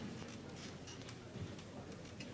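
Faint rustling and scattered small clicks from a seated audience in a quiet hall.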